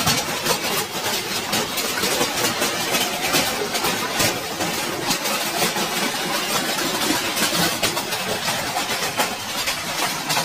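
Hailstones pelting corrugated tin roofing, a dense, unbroken clatter of many small impacts.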